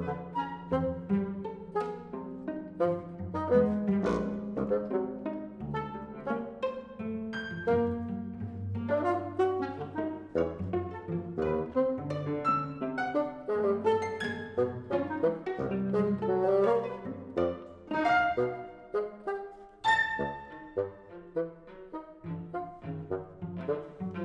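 A contemporary chamber concerto for solo bassoon and small ensemble playing a busy passage of short, detached notes over held low notes from strings and winds, with a sharp accented chord about 20 seconds in.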